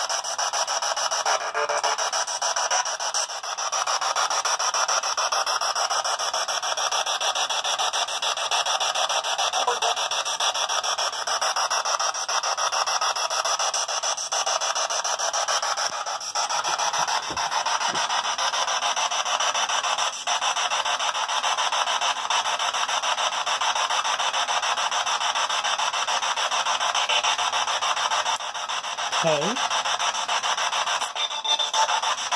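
Spirit box radio sweeping through stations: a steady hiss of static, finely chopped by the rapid station stepping. Near the end there is a brief fragment that glides in pitch.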